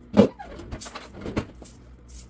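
A glass pot lid with a metal rim being handled on a cookware pot and a stone countertop: a loud clank near the start, then a second, lighter knock a little past halfway.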